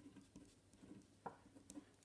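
Faint scratching and tapping of a pen writing on paper, with a couple of small sharper ticks in the second half.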